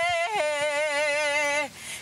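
A woman singing a sertanejo song unaccompanied, holding a long note with vibrato that steps down in pitch just after the start. She takes a breath near the end.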